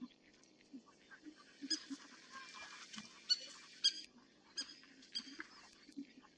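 A wildebeest herd grunting in many short, low calls. A few short, sharp high-pitched calls ring out over them, the loudest a little after three seconds and again near four seconds in.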